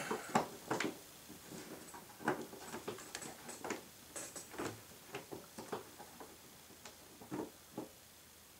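Faint, irregular small clicks and ticks as a wing bolt is turned by hand and threaded down into an RC airplane's fuselage, fingers and bolt working against the wing.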